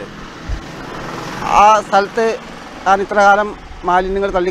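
A man's voice speaking a few short phrases, over a steady rushing background noise during about the first second and a half.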